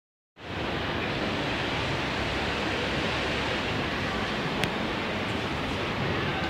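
Steady, loud background hiss that starts suddenly about half a second in and holds even throughout, with a single sharp click near the end.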